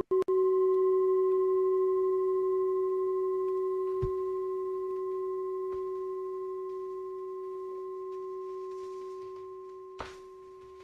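One long ringing tone with a few fainter higher overtones, held and slowly fading away.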